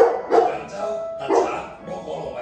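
A dog barking several times in short, separate barks, over background music.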